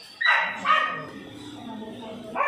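A dog barking twice in quick succession, about half a second apart.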